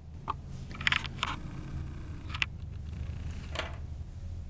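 A handful of small clicks and scrapes, irregularly spaced, over a low steady hum.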